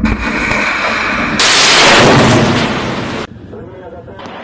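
Missile launching from a warship's deck launcher: the rocket motor's loud roar, which swells sharply about a second and a half in and cuts off abruptly a little after three seconds.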